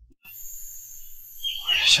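Faint steady high-pitched hiss with a low hum beneath. A man's voice starts speaking near the end.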